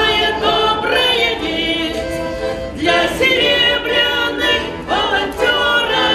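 A small group of women singing a song together, accompanied by two button accordions (Russian garmon).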